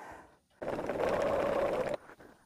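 Bernina sewing machine running at a steady speed, stitching through fabric, starting about half a second in and stopping abruptly near the end.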